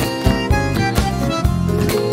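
Acoustic guitar strummed in a tango-style rhythm, with sharp accented strokes, during an instrumental passage of the song, with a held melody line sounding above it.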